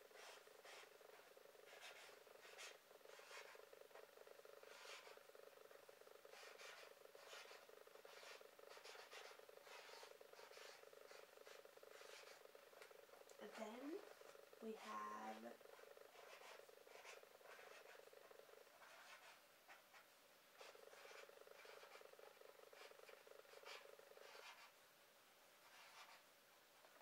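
Faint scratching strokes of a felt-tip marker writing on paper pinned to a board, under a steady low hum that drops out briefly about three quarters through and stops near the end. A short murmur of a woman's voice comes about halfway through.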